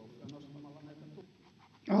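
Faint voices in a large hall, including one held, drawn-out voice sound in the first second, then a man starts speaking loudly right at the end.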